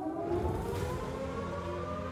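Air-raid siren slowly rising in pitch, with a low rumble under it about half a second in.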